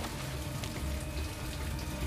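Water pouring and splashing into a flooding cabin as a steady rush, with a low rumble pulsing underneath.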